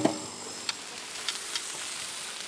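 Sausages sizzling on a flat outdoor griddle plate, a steady quiet hiss with a few faint ticks.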